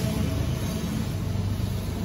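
Several diesel freight locomotives rolling past close by, their engines and wheels giving a steady low rumble.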